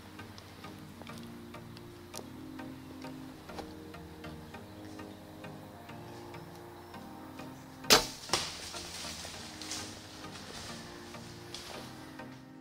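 A compound bow shot about eight seconds in: one sharp, loud snap of the string's release, followed about half a second later by a second, quieter knock, over soft background music.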